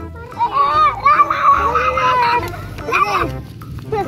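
Children's high-pitched voices, calling out in drawn-out, rising and falling cries, loudest in the first half.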